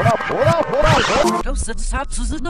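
A man's speech played backwards, turned into garbled syllables with no clear words. About one and a half seconds in, it cuts abruptly to a second reversed voice clip with a duller, narrower sound.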